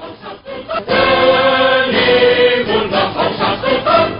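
Music with choir singing that comes in loud about a second in, holding long sustained notes.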